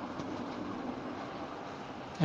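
Steady background hiss and low hum with no distinct events: the room tone of a recorded talk during a pause in speech.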